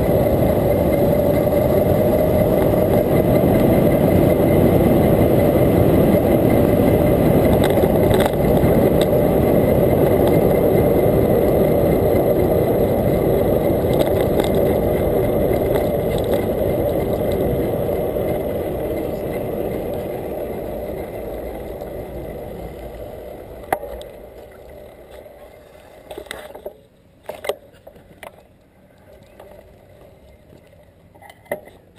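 Loud wind rush on the camera microphone and tyre noise from an electric bicycle riding along a paved street. The noise dies away over several seconds as the bike slows to a stop, leaving a few light clicks and knocks near the end.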